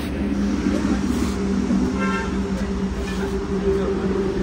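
A steady low mechanical hum, with a short high-pitched tone about two seconds in.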